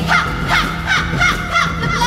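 Live experimental music: a steady keyboard drone under a string of short, high, swooping vocal cries, about three a second, with a crow-like caw quality.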